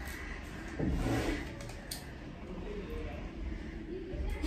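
A folded paper slip being opened by hand, with faint crinkles, over a steady low rumble. A short murmur of a woman's voice comes about a second in.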